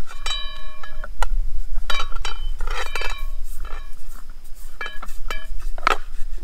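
Metal frying-pan base of a DIY ground pod clanking and ringing as a gimbal head is unscrewed from it by hand: a run of sharp clinks, the first ringing on for about a second, the rest ringing briefly.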